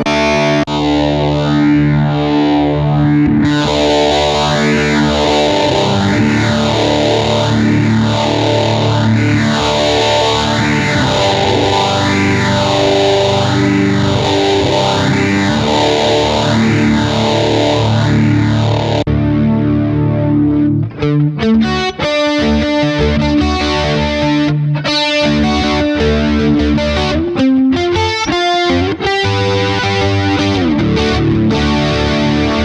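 Electric guitar played through a Hotone Ampero II multi-effects processor. Sustained chords carry an effect that sweeps up and down about every second and a half. Past halfway the playing turns to choppier, distorted notes.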